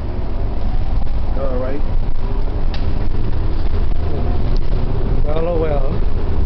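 Steady low rumble of a city bus under way, heard from inside the passenger cabin. A voice sounds briefly about a second and a half in and again near the end.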